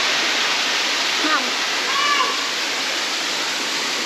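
Waterfall and rocky creek: a steady, even rush of falling water.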